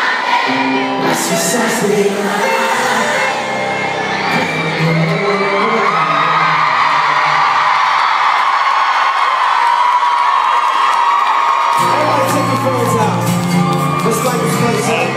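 Live pop concert heard from within the audience: a singer and band play through the venue's sound system. About five seconds in, the bass and instruments drop out and the crowd screams. Near the end the band comes back in with bass and drums.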